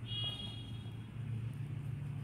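A low steady hum that grows louder about a second in, with a brief high-pitched tone in the first second.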